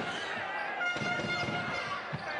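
Basketball dribbled on a hardwood court, a run of short thumps over steady arena crowd noise, with faint steady high tones in the background.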